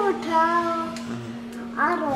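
Newborn baby crying in short, sustained, high-pitched wails, the last one falling in pitch, over a steady low hum.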